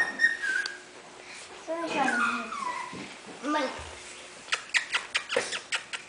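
Four-week-old Havanese puppies whimpering: a thin high whine near the start, then a few short pitched cries. A run of quick light clicks follows near the end.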